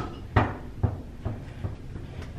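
A rubber ball bouncing along a carpeted hallway floor: about five dull thuds a little under half a second apart, each fainter than the last.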